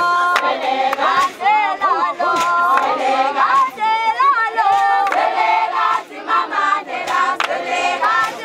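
A group of Zulu maidens singing together, many high voices overlapping in a traditional song, with sharp claps scattered through it.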